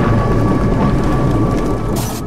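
Thunderstorm sound effect: a loud, low rolling rumble of thunder over steady rain.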